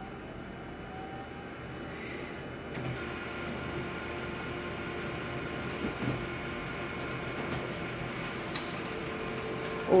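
Konica Minolta colour copier running a copy job: a steady machine whirr that steps up a little about three seconds in, with a few soft clicks, as the page is printed and fed out to the tray.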